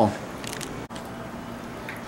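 Faint steady background noise with light rustling, broken by a brief dropout about a second in.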